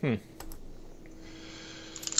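A man's short "hmm," then a couple of computer keyboard clicks about half a second in, over a faint steady hum.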